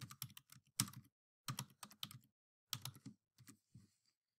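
Faint computer keyboard typing: quick runs of keystrokes in short bursts, separated by brief pauses.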